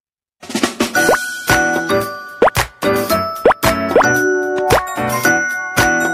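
Short, cheerful jingle of bright, bell-like plucked notes, punctuated by several quick rising pop sound effects; it starts after about half a second of silence.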